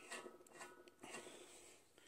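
Near silence with a few faint metallic clicks and scrapes in the first second: a steel spark plug fouler being turned by hand into the catalytic converter's oxygen-sensor bung, its thread catching.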